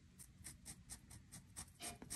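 A kids' washable felt-tip marker scribbling back and forth on fabric as a square is coloured in: a rapid run of faint strokes, about seven a second.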